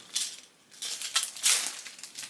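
Clear plastic packaging rustling and crinkling in several short bursts as items are handled.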